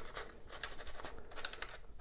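Wet Scotch-Brite scouring pad scrubbed back and forth over a plastic toy model, scrubbing shoe-polish grime off the raised surface: a run of faint scratchy strokes, several a second.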